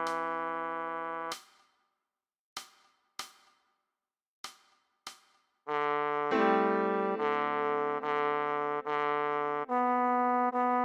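Trombone melody from a sheet-music playback: a held E3 fades out about a second in. Then comes a pause broken by four short struck notes that die away quickly. From about halfway a line of notes resumes, moving down to D3 and on through repeated notes up to B3.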